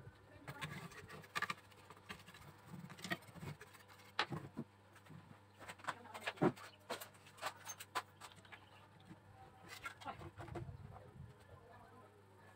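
Irregular clicks, knocks and rustles of a CRT television's main circuit board and its wires being handled and slid across a wooden workbench as the chassis is pulled out and turned over, with one louder knock a little past the middle.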